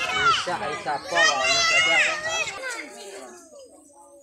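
Several voices, children's among them, chattering and calling over one another; the talk dies down in the last second or so.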